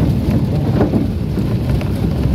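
Loud, steady low rumble of a car driving along a paved road: tyre and road noise mixed with wind buffeting the microphone.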